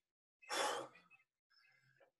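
A single short, breathy exhale, a sigh, about half a second in.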